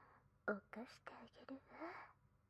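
A woman whispering close to the microphone in a few short, breathy phrases, starting about half a second in.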